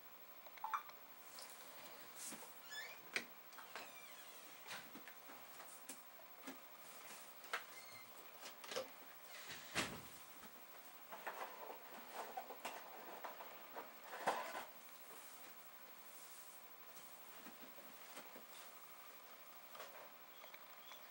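Quiet handling noises as cleaning supplies are gathered: scattered small clicks, knocks and rustles of objects picked up and set down, with a heavier knock about ten seconds in and a busy stretch of handling a little after.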